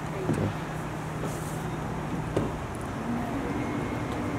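A motor vehicle running close by, a steady engine hum that shifts to a higher pitch about three seconds in, over road traffic noise, with a few short sharp knocks along the way.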